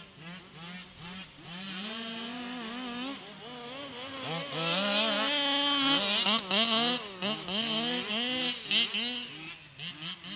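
Small two-stroke petrol engines of 1/5-scale Baja-type RC cars (a 36cc and a 32cc) revving and blipping, the pitch rising and falling constantly with more than one engine heard at once. Loudest about four to six seconds in, then a series of short throttle cut-offs.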